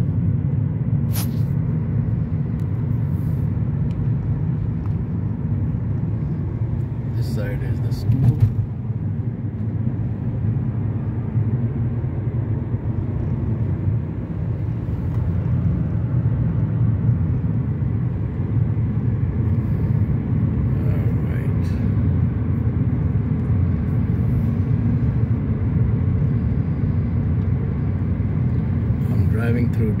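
Steady low rumble of a car driving along a highway, heard from inside the cabin. A few brief short noises stand out, the loudest about eight seconds in.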